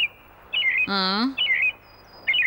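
A small bird chirping twice in short wavy calls, with a brief vocal sound from a woman with a slightly rising pitch between the chirps, about a second in.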